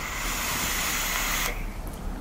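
Sub-ohm dripping atomizer being drawn on: the coil sizzles and air hisses through the atomizer in one long steady draw that cuts off suddenly about a second and a half in as the fire button is released.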